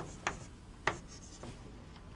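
Chalk strokes on a blackboard: two short sharp taps of chalk, a faint one about a quarter second in and a louder one just under a second in, then quiet room noise.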